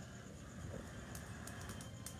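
Pork ribs cooking over a charcoal grill, heard faintly: a low hiss with a few small, quick crackles in the second half, over a low steady rumble.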